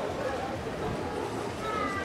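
Voices of people talking near the microphone over a noisy outdoor bed, with a brief high-pitched cry near the end.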